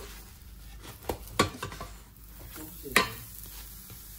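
A pancake frying in a nonstick pan with a quiet, steady sizzle, broken by a few sharp clicks of a metal spatula against the pan, the loudest about three seconds in.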